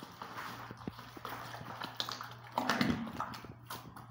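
A bare hand mixing plaster of Paris powder into water in a plastic bucket: irregular wet knocks, slaps and squelches, louder about two and a half seconds in, over a steady low hum.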